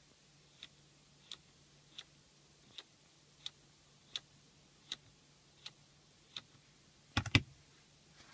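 BMW iDrive rotary controller clicking through its detents: nine single turn clicks about 0.7 s apart, then a quick cluster of louder clicks as the knob is pressed down near the end. This is the right-3, left-3, right, left, right turn sequence with a final press that unlocks the hidden service menu.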